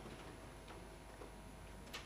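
Quiet hall room tone with scattered faint clicks and knocks, and one sharper click near the end, as a seated audience gets up from chairs.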